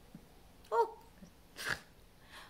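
A woman's short vocal "oh", then a single breathy exhale of a laugh about a second later.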